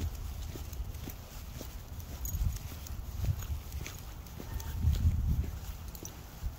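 Footsteps on a wet paved street, a string of light irregular clicks, over low wind and handling noise on a handheld phone's microphone that swells about three and five seconds in.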